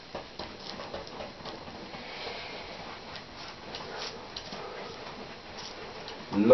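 Paintbrush scrubbing and dabbing on canvas, blending wet paint into the surrounding colour: a run of short, soft, irregular strokes.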